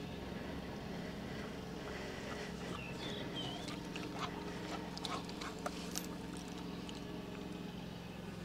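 English setter puppy giving a brief, faint high whimper about three seconds in, over a steady low hum and a few light clicks.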